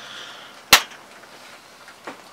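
A single sharp snap, a spark as the battery charger's clamp touches the terminal of a Ford starter relay (solenoid). Current is arcing through a relay that should be open: its contacts are stuck closed, which the owner puts down to a damaged spring inside.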